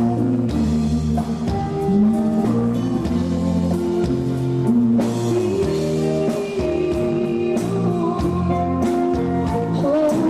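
A live Tejano band playing a song, with a female lead singer's long held notes over keyboards and a steady drum beat.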